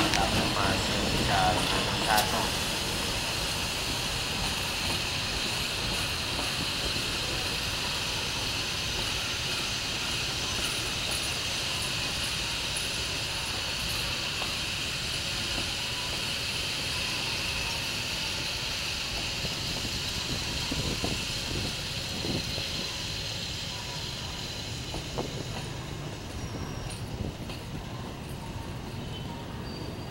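Passenger train behind a CC 201 diesel locomotive rolling slowly past: steady wheel-on-rail rumble with a high hissing band, a few knocks late on, gradually fading as the coaches go by.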